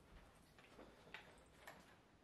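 Near silence: room tone, with a few faint ticks about half a second apart.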